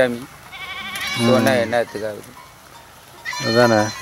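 A farm animal calls once near the end with a high, wavering bleat.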